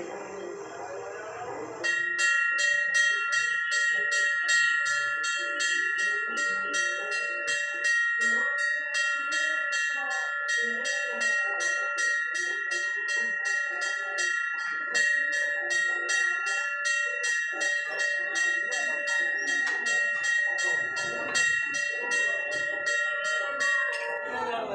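Hanging temple bell rung rapidly and continuously, about three strikes a second, its ringing tones carrying on between strikes. The ringing starts about two seconds in, cutting in over background music.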